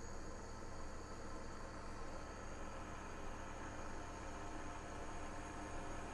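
Steady hum and hiss of an induction cooker running flat out under a saucepan of water coming up to the boil, with several steady tones over an even rushing noise.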